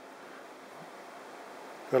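Faint steady hiss of room tone in a pause between words, with no distinct event; a man's voice starts again just before the end.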